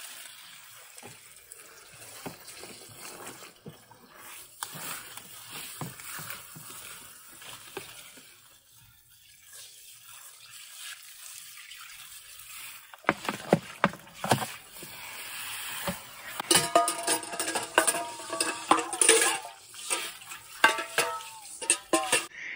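Water from a garden hose with a spray nozzle splashing onto shredded paper, cardboard strips and grass clippings in a plastic compost bin, wetting the new compost layers. The spray drops off around the middle and comes back louder from about thirteen seconds in.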